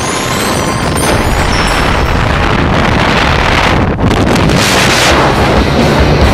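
Loud wind rushing over a hand-mounted camera microphone as a tandem skydiver pair exits the aircraft and falls free, with a brief drop in level about four seconds in.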